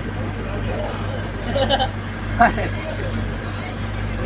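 Steady low hum of an idling bus engine, with a few faint, scattered voices from the crowd.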